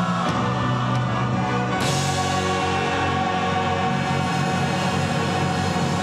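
Church choir singing with piano and orchestra, holding a long sustained chord that grows brighter about two seconds in.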